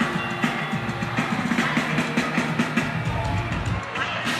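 Live band music led by an electric guitar, playing over a steady beat.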